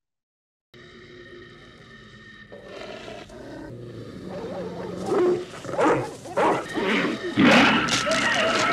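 Film soundtrack: a steady low drone, then a dog growling and snarling, growing louder and loudest near the end.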